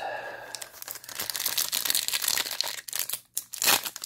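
Foil trading-card pack wrapper crinkling and tearing as it is handled and opened, a continuous crackle with a louder burst near the end.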